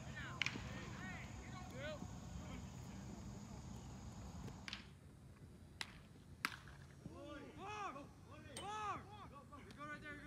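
Quiet outdoor ambience on a baseball field, broken by a few sharp cracks of a baseball in play. Short rising-and-falling calls cluster near the end.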